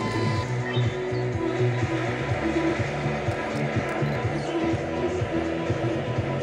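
Pop music playing on FM radio, with a steady beat.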